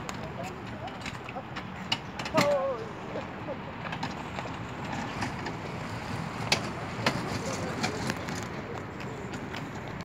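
Indistinct voices of bystanders gathered in the street, with one loud, wavering call about two and a half seconds in and a few sharp knocks later on.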